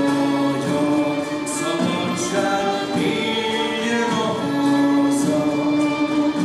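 Music with a choir singing, the voices holding long notes that change about every second or so.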